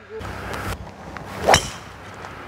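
A golf driver striking a teed ball: one sharp crack about one and a half seconds in.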